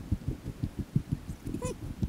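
Irregular low rumbling and thumping on a body-worn camera's microphone outdoors, with one short, high whine about one and a half seconds in.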